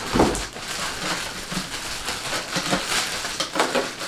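Clear plastic wrapping crinkling and rustling as it is pulled off a karaoke speaker, with a thump just after the start.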